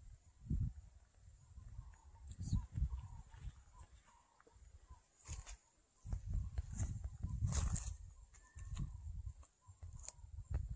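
Outdoor bush ambience: low rumbling in irregular gusts, with faint short bird-like chirps and a thin, steady high insect-like whine.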